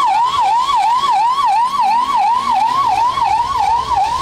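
Electronic emergency-vehicle siren in a fast yelp, its pitch sweeping up and down about three times a second.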